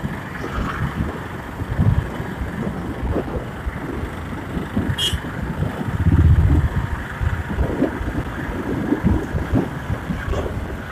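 Riding a motorcycle through light traffic: wind buffeting the microphone over engine and road noise, swelling louder about six seconds in. A short high beep sounds about five seconds in.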